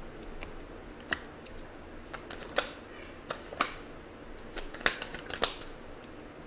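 Tarot cards being handled and laid down: a string of about ten sharp, separate card clicks and snaps spread unevenly over a few seconds.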